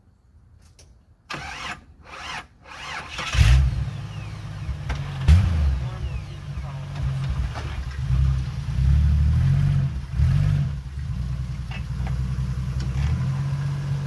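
Jeep Wrangler engine cranked by the starter and catching about three seconds in. It is then revved a few times and keeps running at a low, steady pitch as the Jeep reverses.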